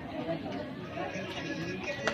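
Low chatter of several people talking at once.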